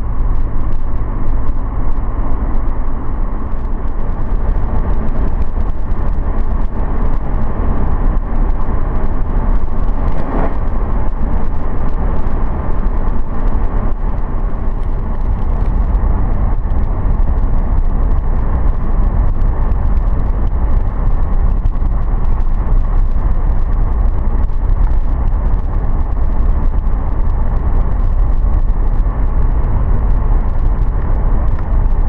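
A car driving along the road: a steady, unbroken low rumble of tyres, engine and wind.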